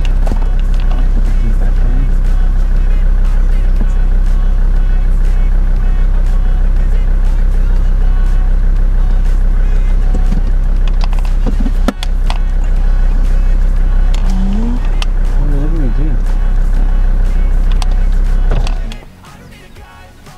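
Ford Ranger 4x4's engine idling steadily while the vehicle stands still, with a few brief faint calls over it. The engine sound cuts off suddenly near the end.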